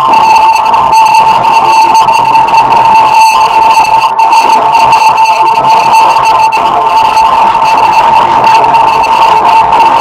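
A heavily effects-processed electronic tone: one loud, steady, high-pitched note with a harsh edge of overtones and noise, held without a break.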